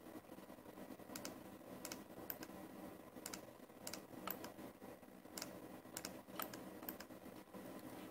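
Faint, irregular clicking of computer mouse buttons and keys over a faint steady hum.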